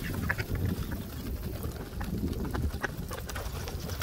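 A flock of mallard ducks feeding on grain scattered on a wooden dock: a few short, scattered quacks and taps of bills pecking at the boards, over a low rumble.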